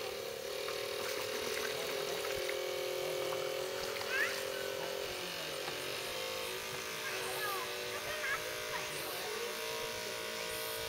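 Small electric drive motor of a radio-controlled model boat running with a steady buzzing whine. Its pitch steps a few times and rises near the end as the boat gets under way. A few short chirping calls sound over it.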